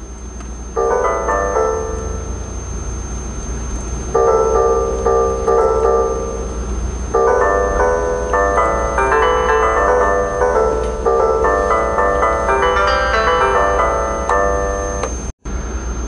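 MIDI koto-voice neurofeedback tones playing quick runs of notes in a Chinese scale, with pitch modulation. The notes start about a second in, pause for a couple of seconds, then play on almost without a break. They sound while the EEG alpha percent energy is above the threshold and shut off when it drops below.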